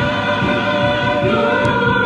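Congregation singing a gospel worship song together, many voices holding long notes.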